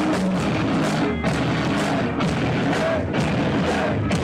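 Heavy metal band playing live: electric guitar, bass and drum kit, loud and continuous, in a rough, distorted audience recording.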